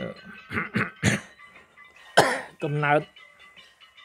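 A man's voice speaking in short, broken phrases with pauses, one sharp loud syllable about two seconds in, over faint background music with steady held tones.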